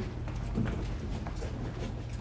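Footsteps of several people walking out across a hard floor, scattered knocks and shuffles, over a steady low hum.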